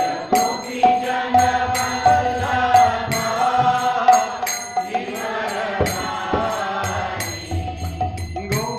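Devotional mantra chanting sung to a melody, kept in time by small hand cymbals struck in a steady rhythm over a low drum beat.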